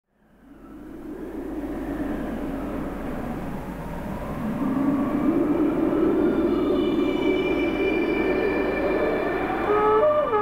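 Electric trumpet played through effects: a rough, rumbling drone with faint wavering higher tones, fading in from silence. Near the end a conch shell trumpet (horagai) starts a held, steady note.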